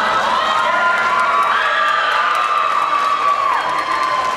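High-school audience cheering and screaming, many high-pitched voices overlapping in a steady loud din.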